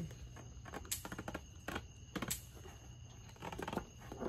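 Light handling of small cosmetic packaging, probably lipstick tubes and their boxes: a few short, sharp clicks and taps, about one a second in the first half, over faint rustling.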